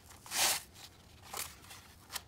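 Handling noise from a Meta Quest 3 headset's fabric head strap rubbing against its plastic frame as it is worked off: a short rustle about half a second in, and a softer one around a second and a half.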